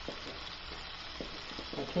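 Filet steaks frying in butter and garlic in a pan, a steady quiet sizzle, with a few light clicks of a wire whisk against a bowl.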